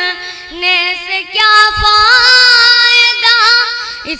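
A boy singing an Urdu couplet in tarannum, the sung style of reciting poetry, drawing out long, wavering notes.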